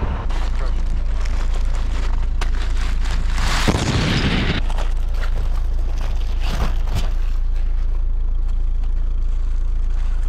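Plastic grocery bag rustling and crinkling around the camera, holding drink cans, loudest in a burst just before the middle and in sharp crinkles just after, over a steady heavy low rumble on the microphone.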